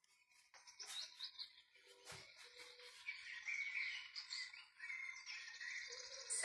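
Birds chirping and singing in a string of short calls that grow busier and louder through the second half, after a few faint clicks near the start.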